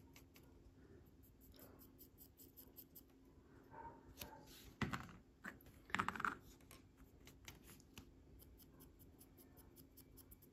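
Small metal paint tins, used as stands for miniature models, being handled, picked up and set down on a cutting mat: light clicks and scrapes, with two louder knocks about five and six seconds in.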